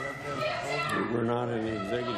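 Several voices shouting and talking over one another, none of them clear enough to make out. One raised voice holds a long, level call in the second half.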